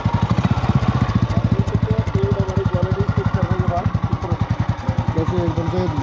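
Royal Enfield Bullet Electra's single-cylinder four-stroke engine idling with a steady, even beat, heard close to the exhaust silencer.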